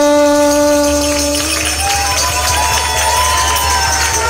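The chant ends on one long held sung note, which stops about a second and a half in. A crowd then cheers with many high, wavering shouts.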